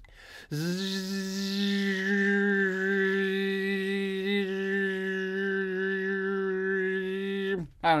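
A man's voice holding one long, steady, hummed or sung drone note for about seven seconds. It starts about half a second in and cuts off near the end.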